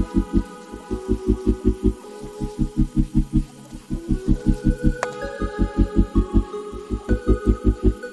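Music with a fast, pulsing bass beat, about eight pulses a second, broken by short pauses, under a melody that moves in steps. A single sharp click comes about five seconds in.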